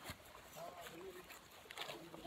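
Faint voices of people talking a little way off, with a few light clicks.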